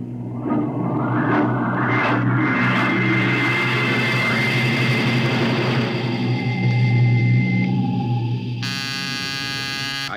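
Radio-drama sound effect of a rocket ship's power room: a low steady hum with a rush of noise swelling over the first couple of seconds and a thin high whine. About nine seconds in, a harsh electric buzzer starts suddenly, calling the power room on the intercom.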